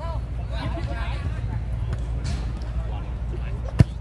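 Faint players' voices on the pitch over a steady low rumble, then near the end a single sharp thud of a football being struck for a long-range shot.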